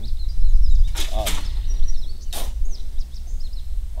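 A shovel digging into loose, sandy lamproite tailings, two short gritty scrapes about a second and a half apart.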